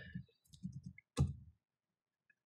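A few faint keystrokes on a computer keyboard, the sharpest about a second in, as a line of R code is edited.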